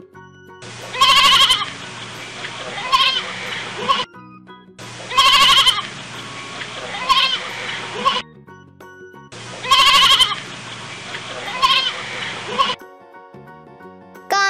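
Lamb bleating: a loud, quavering high bleat and then a shorter one about two seconds later. The same few seconds of field recording play three times in a row, with soft background music in the gaps.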